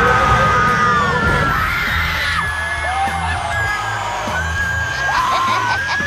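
People screaming and yelling over music with a steady low bass line. The long high screams slide in pitch and overlap.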